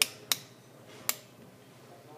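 Three sharp clicks: one right at the start, another about a third of a second later, and a third about a second in.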